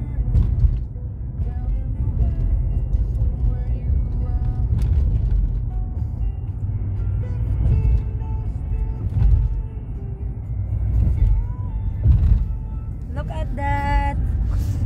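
Low, steady road rumble of a car driving, heard from inside the cabin, with faint music and voices over it.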